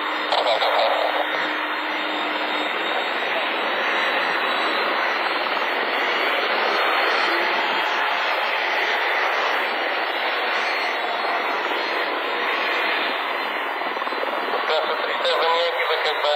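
Jet airliner's engines running as it rolls along the runway: a steady rushing noise that swells a little mid-way. Brief bits of radio voice come in just after the start and again near the end.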